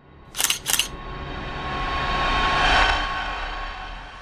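Two camera shutter clicks in quick succession, a sound effect, followed by a swelling whoosh that builds for about two seconds and then fades.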